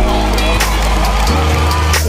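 Arena sound system playing music with a heavy, held bass note that shifts about two-thirds of the way in, over the hubbub of a crowd of spectators.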